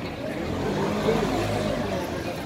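Busy street ambience: a low steady rumble with a murmur of passers-by's voices over it.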